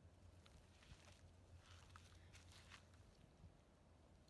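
Near silence: faint outdoor background with a low steady hum and a few faint ticks and rustles.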